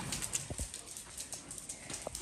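A dog's claws tapping a few times on a tiled floor as it moves about.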